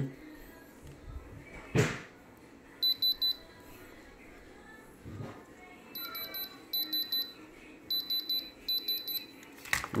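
Handheld diamond tester beeping in short bursts of rapid high-pitched pips, five bursts in all, one early and four close together near the end. The beeps are its signal that the stone under the probe reads as diamond.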